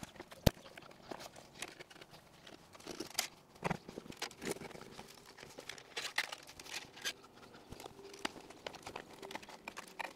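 Wiring and its plastic conduit being handled and pushed into place in an engine bay: irregular rustling and light clicks, with one sharp click about half a second in.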